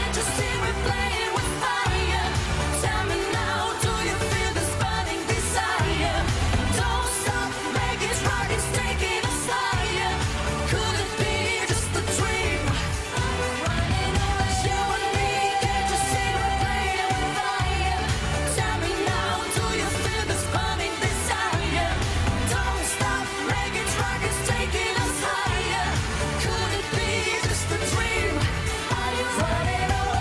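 Live pop song sung by a male and a female singer over a steady dance beat, with a long held vocal note about halfway through.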